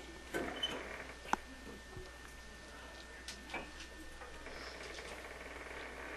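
Faint scattered knocks, clicks and scrapes of a heavy old wall-hung bathroom sink being handled and lifted away from its wall hanger, with one sharper click just over a second in.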